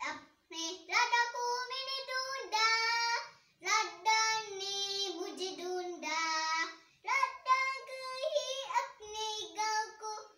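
A young girl singing unaccompanied, in phrases of long held notes with short breaks between them.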